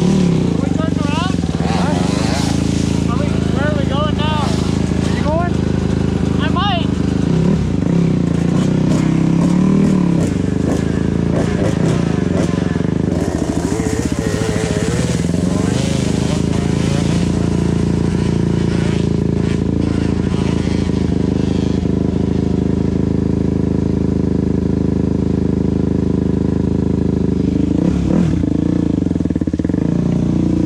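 Dirt bike engines idling steadily close by. Partway through, another dirt bike runs off up the gravel trail, and near the end the near bike pulls away.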